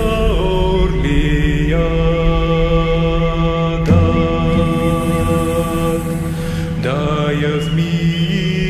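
Instrumental Bulgarian folk music: an ornamented melody with pitch slides and quick trills over a steady low drone, with a low beat accent near the middle.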